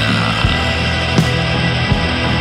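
Rock band playing an instrumental passage: bass and drums under guitar, with a drum hit about every three-quarters of a second.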